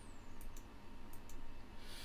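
Faint computer mouse clicks, two quick pairs, while selecting files in a list.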